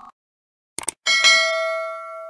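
A quick double mouse click, then a bright bell ding struck twice in quick succession that rings on and fades out. This is the sound effect of a YouTube subscribe-button and notification-bell animation.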